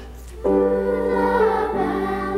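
Children's choir singing: a short break between phrases, then the voices come back in together about half a second in and hold sustained notes.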